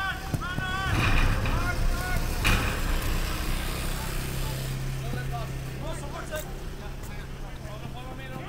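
Footballers shouting calls to each other across an outdoor pitch, with a sharp thump about two and a half seconds in, typical of a ball being kicked. A steady low hum runs through the second half under the play.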